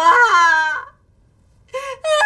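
A woman wailing through tears, a drawn-out crying word that falls in pitch and breaks off after about a second; her tearful voice starts again near the end.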